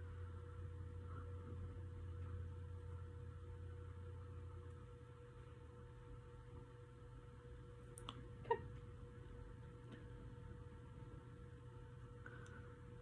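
Quiet room tone with a faint steady hum; a lower part of the hum drops out about five seconds in.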